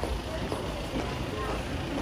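Outdoor town-centre ambience: passers-by talking indistinctly over a steady low rumble of traffic.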